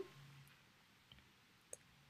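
Near silence, with one faint, short click late on.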